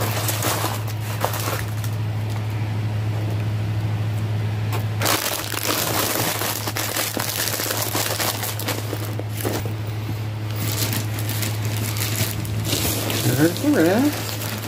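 Plastic packaging crinkling and rustling as it is handled, heaviest in the middle stretch and again near the end, over a steady low hum.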